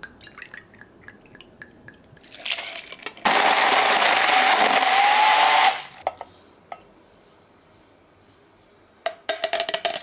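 Blender running at a steady pitch that rises slightly, for about two and a half seconds, blending a frozen cocktail. Light clinks come before it, and a short rattling burst comes near the end.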